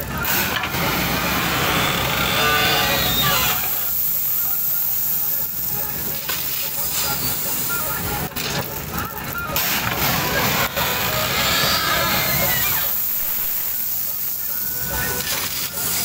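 JCB 3DX backhoe loader's diesel engine running under hydraulic load while its rear bucket digs into a pile of 20 mm stone chips and pours them into a steel tractor trailer, the gravel rattling down in rushes.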